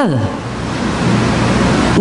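A man's voice trails off with a falling pitch, leaving a steady, fairly loud hiss with a low hum under it: the background noise of the sermon recording.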